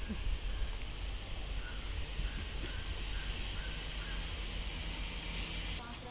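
Steady outdoor background hiss with a low rumble, with a few faint short chirps around the middle and a brief brighter rush of noise near the end.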